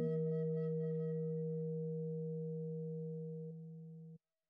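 A bronze gamelan instrument ringing out after the closing stroke of a piece in pelog barang: a steady low, pure-sounding tone with a higher overtone, slowly fading.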